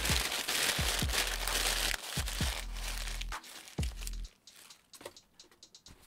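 Brown kraft packing paper crumpling and rustling as it is pulled away from a boxed bobblehead, loudest and densest for the first two seconds, then lighter rustles with a few sharp knocks of the cardboard box.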